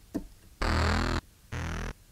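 Two short sampled synth notes from the Logic Pro X Sampler, played from a keyboard, the second softer than the first: velocity is being tried out as a modulator of the sample start.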